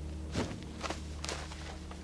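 Footsteps of a soldier's boots: several steps about half a second apart, over a steady low hum.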